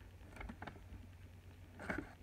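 Faint rustling and a few soft clicks of paper and cards being handled, over a low steady hum.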